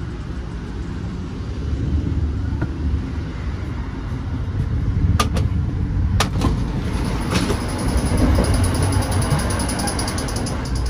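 Running rumble of an Amfleet I coach on the move. About five to six seconds in come a few sharp clicks as the powered end door is pressed open. The sound then grows louder, with a fast, even high ticking from the gangway between cars.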